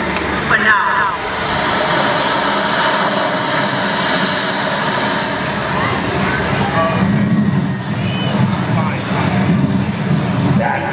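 Busy outdoor crowd ambience: a steady rushing noise with indistinct voices, and a low rumble that grows stronger about seven seconds in.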